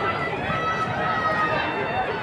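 Players' voices shouting across an open rugby pitch, with one long call held from about half a second in for about a second, over steady outdoor background noise.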